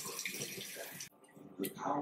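Water running from a tap, a steady hiss that stops abruptly about a second in.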